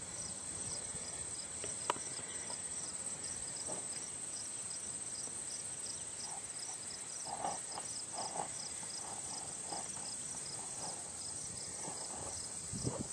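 Insects chirping: a steady high-pitched trill with a short high chirp repeating about twice a second. A single sharp click comes about two seconds in.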